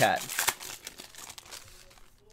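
Foil wrapper of a 2018-19 Panini Prizm basketball pack crinkling in the hands as it is opened. The crackle is loudest about half a second in, then goes on more softly.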